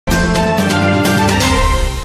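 A news channel's intro theme music: loud, with sustained pitched tones over a heavy low end and quick percussive hits, starting abruptly.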